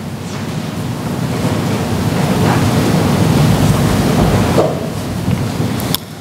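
A rushing noise like surf or wind, without words, that swells over about four seconds, eases a little and stops suddenly at the end.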